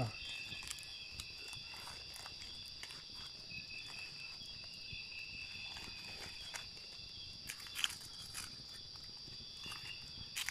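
Night insects, crickets among them, singing steadily in several high pitches, one of them pulsing for a few seconds in the middle. Scattered soft crackles and rustles from the campfire and from leaves being unwrapped, a little louder about eight seconds in.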